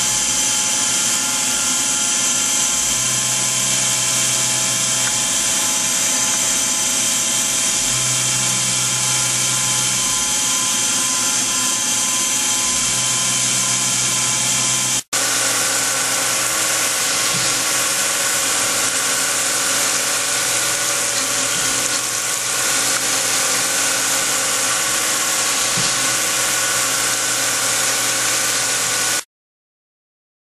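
CNC milling machine cutting 303 stainless steel with an end mill: a steady whine of many tones over a bright hiss, with a low hum that swells and fades every few seconds. About halfway it breaks off and resumes with a different set of tones as coolant sprays on the cut, then stops suddenly just before the end.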